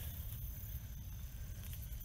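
Low, uneven rumble of handling noise on a handheld camera's microphone, with faint rustling and soft steps through dense wet grass as someone walks through swamp vegetation.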